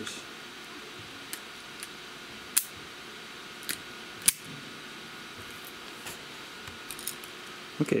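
Handheld wire cutters and an auto wire stripper being handled: about five sharp metal clicks spread over the first half, the loudest about halfway, over a faint steady hiss.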